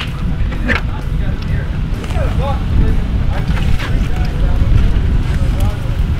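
Wind rumbling on the microphone, with a few soft crackles as the crisp skin and meat of a spit-roasted whole lamb are torn apart by hand, and faint voices in the background.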